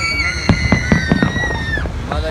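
Aerial fireworks going off overhead: a rapid string of sharp bangs and crackles, with long high whistles that slide slowly in pitch running over them.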